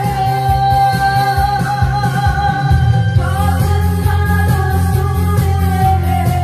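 A woman singing one long held note into a microphone over amplified backing music with a steady bass beat.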